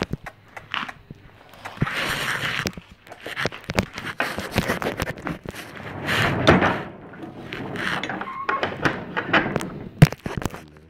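Irregular knocks, thuds and rustling from handling a wooden pen door with a metal latch, mixed with phone-handling noise. Louder bursts of scraping come about two, four and a half and six seconds in.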